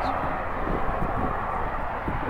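Steady background noise of distant road traffic, with no bird call heard.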